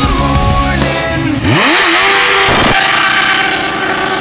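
Rock music with a motorcycle engine revving up about a second and a half in, then running on under the music.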